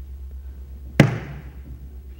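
A single sharp thump about a second in, a hand slapping the wooden pulpit, with a short echo of the room after it, over a steady low hum.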